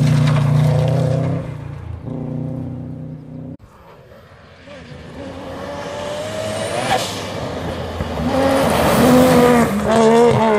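A rally car's engine pulls away on gravel and fades. The sound cuts off abruptly a few seconds in. After that a second rally car is heard approaching, its engine rising in pitch and dropping between gears as it gets steadily louder, and it is loudest near the end as it slides through the corner.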